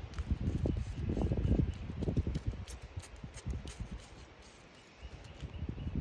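Wind gusting on the microphone in uneven low rumbles that die away for a moment about four seconds in, with several short, faint hissing spritzes from a trigger spray bottle of bleach misting a stencil.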